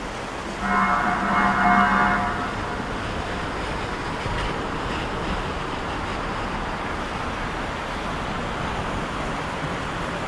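A vehicle horn sounds once for about two seconds, starting about half a second in, over the steady rush of fountain water cascading down stepped basins and the hum of city traffic.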